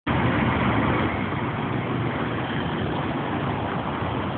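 Steady noise of dense car traffic on a busy city roundabout.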